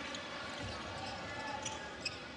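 Steady arena crowd noise with a few faint basketball bounces on the hardwood court.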